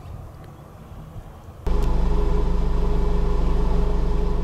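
Faint outdoor background noise, then about one and a half seconds in a loud, steady, low engine hum with a fast even pulse starts abruptly and holds.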